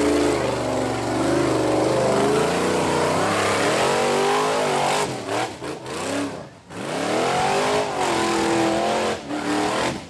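Rock-crawling buggy's engine revving hard as it climbs a rock-ledge hill, the revs rising and falling again and again. The revving breaks off and drops away briefly about five to seven seconds in, then picks up loud again.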